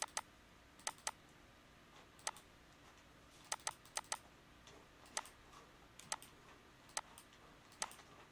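Computer mouse button clicking while a map is dragged and zoomed: sharp, short clicks at uneven intervals, many in quick pairs of press and release.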